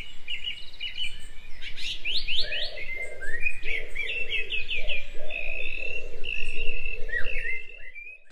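Birds chirping: a busy run of quick, rising and falling chirps and short trills, with a lower repeated note beneath them.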